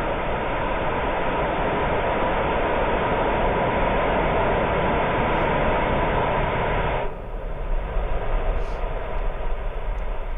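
A 3D-printed Aeon 1 rocket engine firing on a test stand, a loud, steady rushing noise. About seven seconds in the sound changes abruptly: the higher part drops away and a lower, uneven rumbling noise continues.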